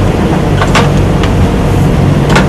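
Steady, loud low-pitched background rumble with no break or change, the same bed of noise that runs under the narration.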